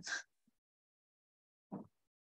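Near silence on a video call: a spoken word ends at the start, and a single short voice sound comes near the end.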